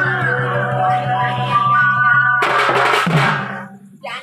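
Live band music: held keyboard melody notes over a steady, evenly pulsing bass, cut off about two and a half seconds in by one loud percussion crash that rings out and fades away.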